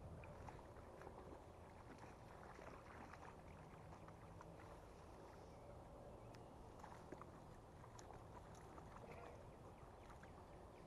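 Near silence: faint outdoor background noise with scattered soft ticks and crackles.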